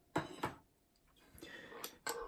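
Faint handling noises: two light knocks about a third of a second apart, then a short rustle ending in a click as the plastic bulk film loader is picked up off the wooden table.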